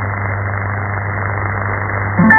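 Shortwave AM radio static: an even, dull hiss with a steady low hum, heard through an RTL-SDR receiver while the station's carrier is on air but carrying no programme audio.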